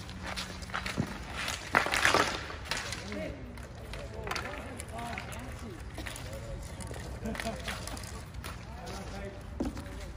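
Ball hockey on an asphalt rink: plastic sticks clacking on the ball and pavement, with a loud burst of stick-and-ball clatter about two seconds in. Distant players' shouts and calls run underneath.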